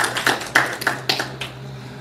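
Scattered applause from a small audience: a run of separate, uneven hand claps that thins out and stops about a second and a half in.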